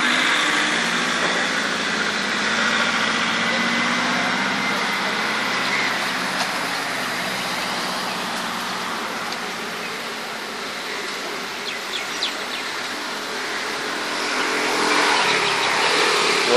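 Steady street traffic noise: motor vehicles running nearby, with a few faint ticks in the second half.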